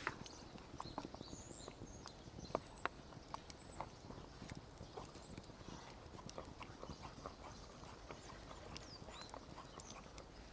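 Faint wood campfire crackling with scattered small pops and clicks at irregular times, mixed with light tapping and scraping of a utensil stirring in a small metal pot.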